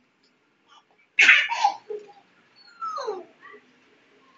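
Short vocal sounds from a person: a sudden loud burst about a second in, then a shorter call that falls in pitch near the end.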